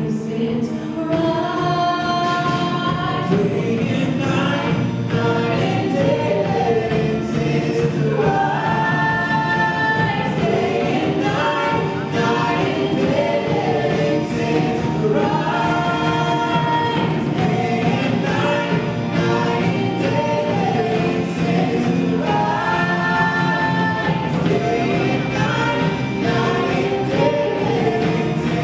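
Live contemporary worship band playing a song with a steady beat: a woman sings lead over acoustic and electric guitars, drums and piano.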